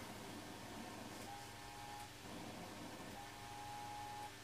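Two keyed Morse (CW) tones from the receiver's audio, near 800 Hz and steady in pitch: the half-watt Michigan Mighty Mite crystal transmitter's 3.579545 MHz color-burst carrier, heard as a beat note. The first tone starts about a second in and lasts under a second; the second starts about three seconds in and runs slightly longer. Faint receiver hiss lies underneath.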